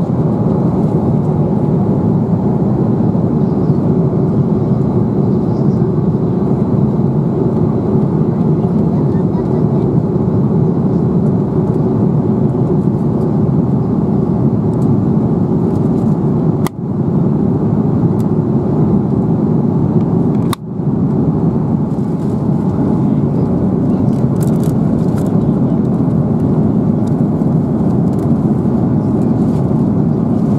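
Steady rushing cabin noise inside an Airbus A330-300 airliner, with two very brief dropouts a little past halfway.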